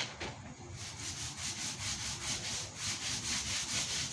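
Paint roller with wet paint being worked back and forth over a drywall wall: a steady, rasping rub in quick, repeated strokes.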